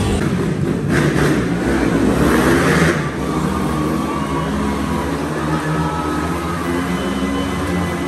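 Motorcycle engine running and revving up and down inside a steel mesh globe of death, at a steady loud level.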